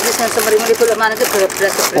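Speech in conversation, with a brief rustle of plastic snack packaging being handled near the start.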